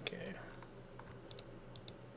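Computer mouse clicking: two clicks near the start, then a quick cluster of clicks in the second second, over a faint steady hum.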